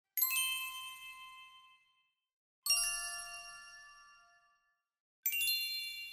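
A bell-like chime struck three times, about two and a half seconds apart. Each stroke rings with several high, clear tones and fades away within about two seconds.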